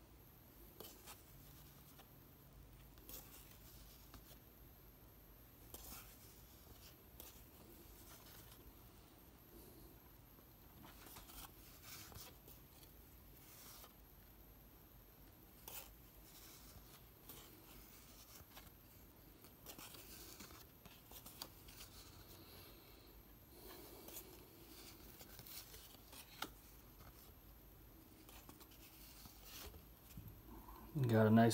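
Faint, scattered rustles and light clicks of cardboard trading cards being handled and thumbed through a stack, against near silence.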